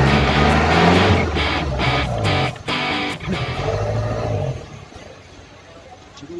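Background music led by guitar with a regular beat, which stops about four and a half seconds in.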